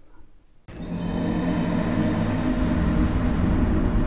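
Video-game 'YOU DIED' death-screen sound effect: a deep, steady drone that starts suddenly under a second in and holds.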